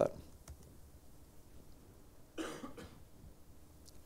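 A single short cough about halfway through, against quiet room tone, with a couple of faint clicks.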